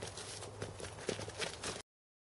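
Quick footsteps crunching and scuffing on gravel as two people spar, with a few sharper knocks among them; the sound cuts off suddenly near the end.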